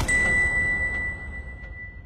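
A single high electronic chime tone, held and fading out over a low rumble, ending a burst of electronic music.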